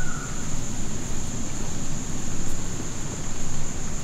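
Insects droning in one steady high-pitched tone, over a low rumbling noise.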